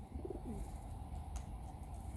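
A short, low bird call near the start, ending in a falling note, over a steady low rumble; a single faint click follows about two-thirds of the way through.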